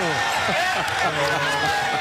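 A commentator's voice over basketball arena crowd noise, with a basketball bouncing on the court.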